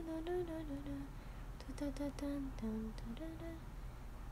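A young woman humming a short tune, two brief phrases of held, stepping notes with a pause of about half a second between them.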